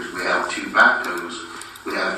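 A person talking in the council chamber, words not clear, picked up at a distance with the room's echo.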